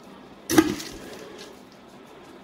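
A single short knock about half a second in as wet birdseed mix is scooped from a stainless steel pot into a plastic container, followed by low room noise.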